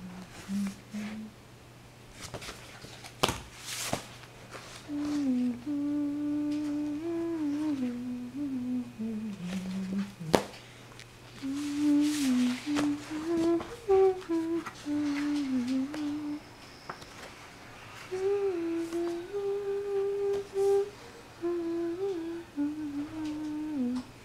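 A person humming a melody wordlessly, in phrases of a few seconds each, with a few sharp clicks or knocks in the pauses.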